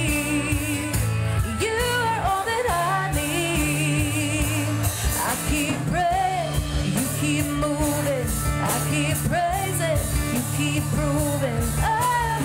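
Worship band playing a song, with voices singing a wavering melody over a steady bass line and drum beat.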